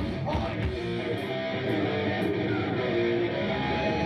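Hardcore punk band playing live, with loud electric guitar strumming carrying through without a break.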